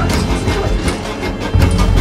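Tense trailer score: a steady rapid beat of about four hits a second over a low sustained bass that swells about one and a half seconds in.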